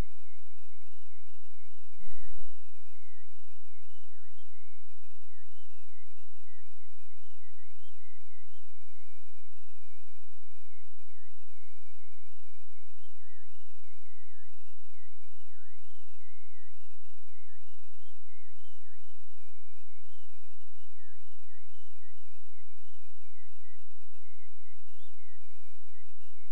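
A single thin, high tone that wavers up and down without a break, like a simple one-line melody.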